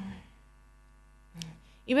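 Steady electrical mains hum in a pause of speech, with a woman's voice trailing off at the start, a brief faint vocal sound about one and a half seconds in, and her speech resuming at the end.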